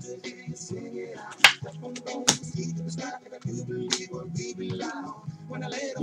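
Quiet background music with steady sustained tones, overlaid by a few sharp clicks from handling trading cards in clear plastic holders. The loudest click comes about a second and a half in, another just after two seconds, and a smaller one near four seconds.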